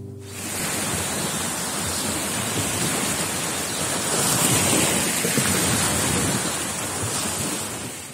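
Choppy, wind-driven waves breaking along a shore, with wind rushing over the microphone: a loud, steady rush of noise.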